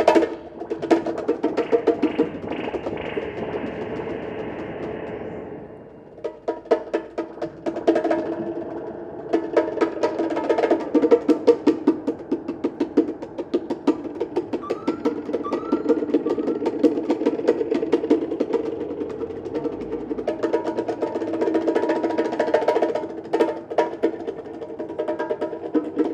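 Live improvised percussion music: fast strokes on wooden bars and hand drums over sustained pitched tones. The sound dips briefly about six seconds in, and a few short rising chirps come in around the middle.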